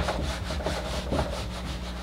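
Whiteboard eraser scrubbed rapidly back and forth across the board, a quick, even run of rubbing strokes wiping off marker writing.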